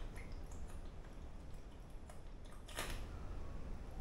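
Faint gulping and swallowing of a man drinking milk straight from a glass pint milk bottle, with small wet clicks and a slightly louder gulp just before three seconds in.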